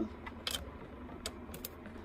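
A few light, separate clicks over faint room tone.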